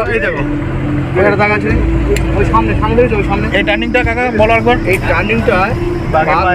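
A man talking over the steady low drone of a boat's engine running.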